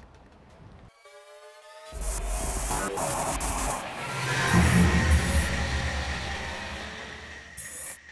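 Electronic logo sting over a glitch animation: a short buzzing tone, then a deep bass hit with glitchy crackle that swells about four and a half seconds in and slowly fades away.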